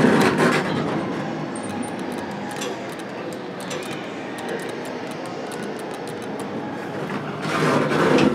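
Dover Oildraulic hydraulic elevator car travelling up between floors: a steady noise of the ride, with faint ticks, swelling louder in the last half second.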